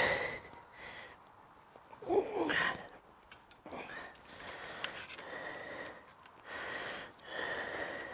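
A man breathing heavily, several audible breaths each lasting up to a second or two, while he works with his hands bent over.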